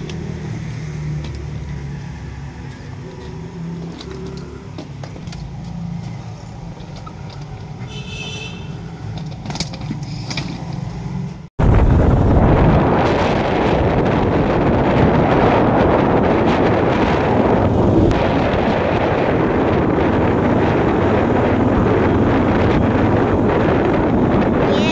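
A low steady hum with light clicks, then after a sudden cut about halfway, a loud steady rush of wind and road noise from riding along in a moving vehicle.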